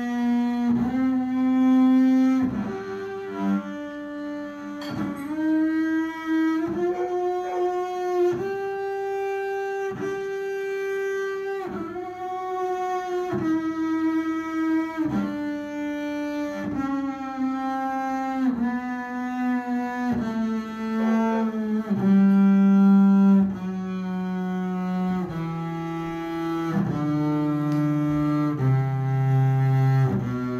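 Double bass bowed through a three-octave G major scale, one sustained note at a time, roughly a second per note. The notes climb to the top of the scale, held for longer about nine seconds in, then step back down.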